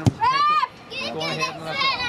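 Women's high-pitched voices shouting and calling across a football pitch. A single sharp thud comes right at the start, followed by a drawn-out rising 'oh' and several voices calling over one another.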